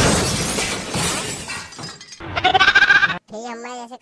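A loud noisy crash-like burst that fades over nearly two seconds, then a short break and a wavering, bleat-like cry of about a second.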